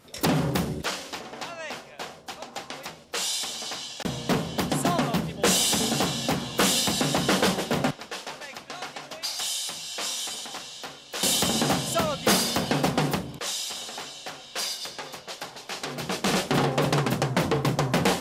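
A drum kit played hard: rapid snare, bass-drum and cymbal strikes, with louder and lighter passages alternating every few seconds.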